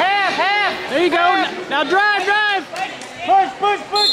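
Voices shouting short, loud calls one after another from the side of a wrestling mat, yelled coaching to a wrestler.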